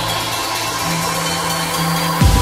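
Instrumental passage of an electronic dance remix: held low synth notes under layered high synths, without a heavy kick drum.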